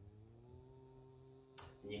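A faint, held low hum: one steady note that rises slightly at first, then holds until it stops just before speech resumes.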